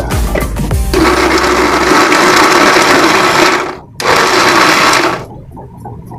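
Electric mixer grinder with a steel jar running in short pulses: it starts about a second in, runs for nearly three seconds, stops for a moment, runs about a second more and stops. Background music plays over the first second.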